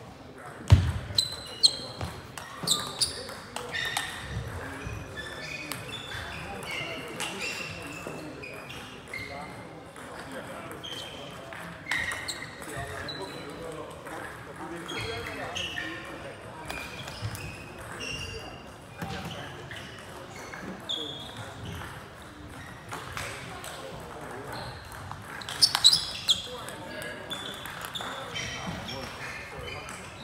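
Table tennis balls clicking sharply on tables, bats and floor across a large hall, in a few loud clusters about a second in and near the end, over a background murmur of voices.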